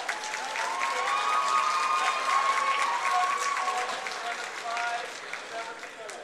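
Crowd applauding, with voices calling out over the clapping. The sound swells about a second in and fades toward the end.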